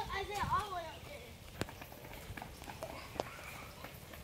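Faint voices in the first second, then quiet footsteps on a paved path, with a couple of sharper clicks about a second and a half apart.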